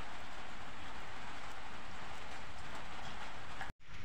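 Crickets frying in oil in a metal wok, a steady sizzle that cuts off abruptly near the end.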